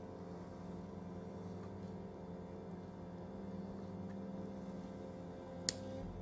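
Soft instrumental background music with steady sustained tones, and a single sharp click near the end, a thin wooden strip tapped against the plywood base of the miniature room.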